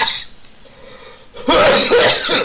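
A man's high-pitched, wheezing fit of laughter: a breathy burst at the start, a quieter lull with a faint held squeal, then a louder gasping shriek about one and a half seconds in.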